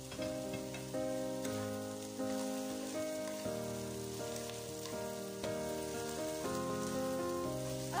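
Instrumental break of a pop song: sustained chords changing about every second, with no singing and a steady hiss beneath.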